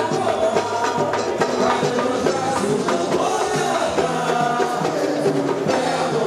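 Carnival street samba: a bateria of samba drums and hand percussion playing a steady beat while voices sing the samba over it.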